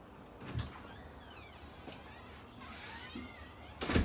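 High animal calls, several of them falling in pitch, between a thump about half a second in and a louder thump near the end.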